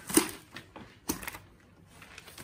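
Plastic packing insert being pulled out of the inside of a laser printer: a sharp plastic scrape and clack just after the start, then a fainter knock about a second in.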